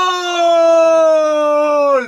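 A man's long, loud shout held on one vowel, its pitch slowly falling, cut off near the end: a fan celebrating a goal.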